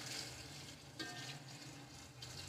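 Water poured from a glass jug into an aluminium cooking pot of chopped vegetables and spices, a faint steady splashing.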